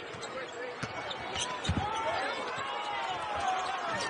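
A basketball being dribbled on a hardwood court, a couple of bounces standing out, with sneakers squeaking in short gliding chirps during the second half, over the background noise of an arena.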